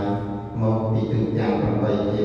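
Buddhist monk chanting in a low, steady male voice into a microphone, drawing out long held syllables with short breaks between phrases.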